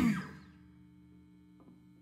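A live rock band's song ending: the last chord and cymbals die away within the first half second. After that only a faint, steady electrical hum from the stage amplifiers remains.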